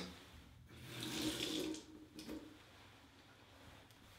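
Sink tap running for about a second as water is run over a filter cartridge's O-rings to wet them, followed by a small click.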